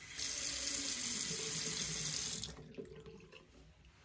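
Water from a single-lever mixer tap running into a vessel basin and down the drain, a steady rushing splash that is cut off abruptly when the tap is shut after about two and a half seconds.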